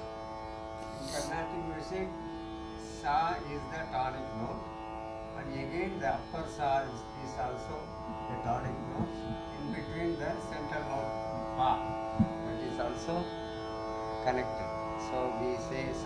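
Tambura drone sounding steadily under a man's voice speaking in short phrases.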